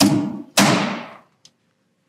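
Slide-hammer dent puller pulling on a glue tab stuck to a car's sheet-metal wheel arch: two sharp metal knocks about half a second apart, each ringing briefly, then a faint click.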